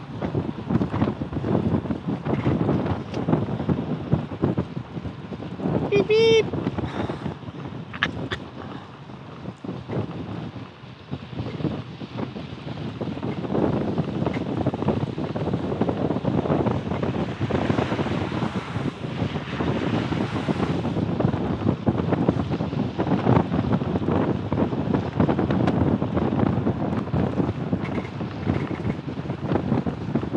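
Wind buffeting the microphone in uneven gusts. A brief high-pitched call sounds once, about six seconds in.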